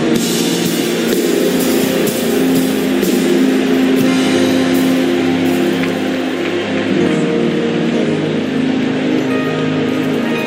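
Live worship band playing music with electric guitar and drums, mostly long held chords that change about seven seconds in.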